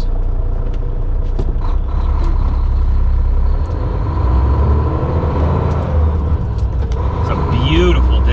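Semi truck's diesel engine running under way, heard from inside the cab as a steady low rumble that dips briefly about halfway through and then comes back stronger.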